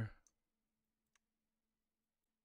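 Near silence with two faint, short clicks of a computer mouse, about a quarter second and a second in, over a faint steady hum.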